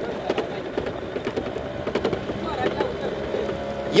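Engine of a slow-moving motor vehicle running steadily, with many scattered rattling clicks over its hum.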